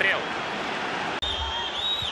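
Football stadium crowd noise under a TV broadcast, broken by a sudden short dropout at an edit about a second in. After it, high gliding whistles sound over the crowd.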